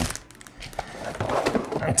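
A 12-volt AGM motorcycle battery being drawn out of its cardboard box: faint scraping and rustling of cardboard with a light knock or two, growing louder toward the end.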